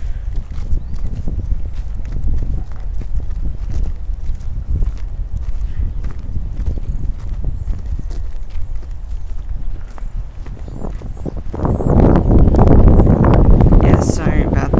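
Wind rumbling on the camera microphone, with the footsteps of someone walking and small knocks of the handheld camera; the wind noise gets louder near the end.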